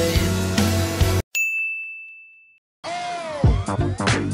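Background pop song cuts off about a second in; a single high bell-like ding rings out and fades, then new electronic music starts near the end.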